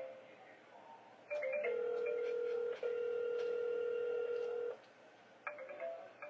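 A mobile phone ringing for an incoming call: short runs of quick electronic notes, and a single steady electronic tone held for about three seconds in the middle.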